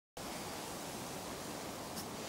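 Steady, even hiss of outdoor background noise with no distinct sounds in it, starting a split second in.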